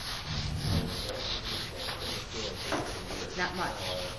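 Fine abrasive rubbed by hand back and forth over an oiled wooden surface, a steady scrubbing that works the finishing oil into the grain.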